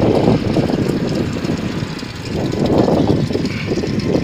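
Loud low rumbling noise without any clear pitch, swelling and easing in irregular surges, strongest at the start and again about three seconds in.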